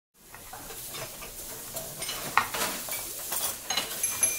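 Food sizzling in a hot frying pan: a steady hiss full of small pops that fades in at the start, with a few short clinks of cookware or utensils, the sharpest about two and a half seconds in.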